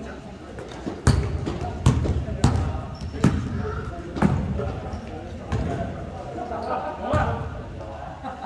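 Basketball bouncing on an indoor gym floor as players dribble, about seven sharp bounces spaced roughly a second apart, in a large hall.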